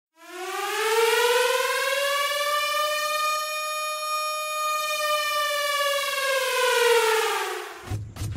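A warning siren wailing: one long tone that rises over about two seconds, holds, then slowly falls away near the end.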